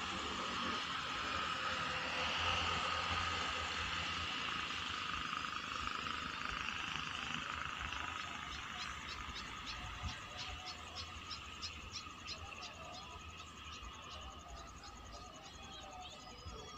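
Outdoor trackside ambience: a steady hiss that slowly fades, joined about halfway through by a quick run of high ticks, about three a second, typical of calling insects or frogs.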